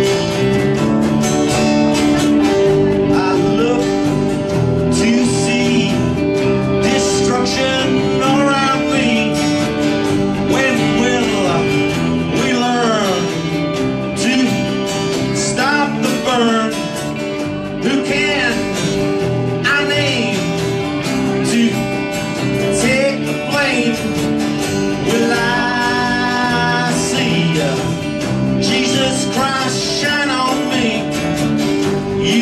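Live country band playing a full-band passage: strummed acoustic guitar with electric guitar, bass and drums, and notes bending up and down in the higher parts.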